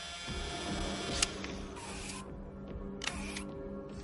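Film score music holding sustained tones, with a sharp click about a second in and two short hissy mechanical bursts, one near the middle and one about three seconds in.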